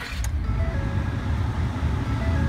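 2011 Ford F-150's engine catching and running up to a fast idle just after starting, heard from inside the cab. A short dash chime sounds about two-thirds of a second in: the driver's-door-ajar warning.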